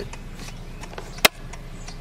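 Handling noise from a phone being moved around a car dashboard: a quiet steady hum with one sharp click a little past a second in.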